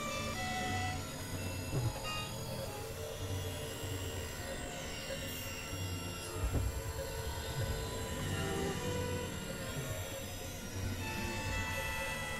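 Experimental electronic synthesizer music: scattered short held tones at many pitches over a pulsing low hum, with sliding pitches high up. There are low thumps about two seconds in and again past the middle.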